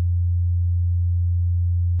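A single deep sub-bass note from a boom bap rap instrumental, held steady on its own after the rest of the beat has dropped out. It cuts off at the very end.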